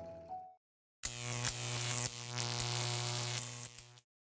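The tail of background music fades out, then comes a moment of dead silence. About a second in, a loud buzzing sound effect with a steady low hum starts abruptly, runs for about three seconds with a few clicks, and cuts off sharply.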